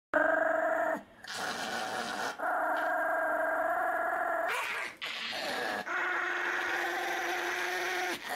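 A small dog, a Pomeranian, howling in a string of long, drawn-out notes, about five held notes with short breaks between them.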